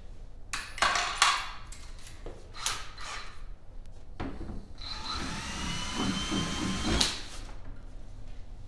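A few sharp knocks and clatters of tool handling, then a cordless drill running for about three seconds, its motor whine slowly rising in pitch as it bores a 13/64-inch hole through a lawn mower bagger cover, enlarging a hole that a mounting screw would not go into. The run ends in a sharp snap.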